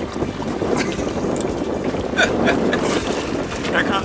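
Wind buffeting the microphone and water sloshing against the side of a drifting boat, with a few short splashes and knocks as a large fish is passed up out of the water over the gunwale.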